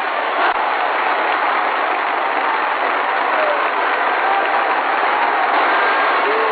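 Steady crowd noise of applause and cheering, thin and muffled as on an old archival recording, with faint voices rising out of it now and then.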